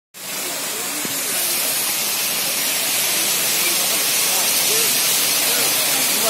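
Water pouring down a decorative rock-wall waterfall in many thin streams, a steady hiss, with faint voices of people mixed in.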